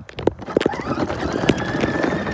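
A plastic ride-on toy starting to roll over asphalt: a few knocks, then a steady rolling noise with a whine that rises in pitch about a second in and holds.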